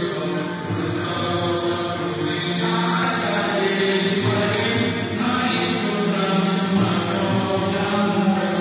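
Devotional chanting with music: a chant sung over steady sustained accompaniment, running on without a break.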